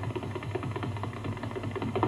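Tap-dancing shoes striking the floor in a quick, uneven run of sharp taps, over a steady low hum.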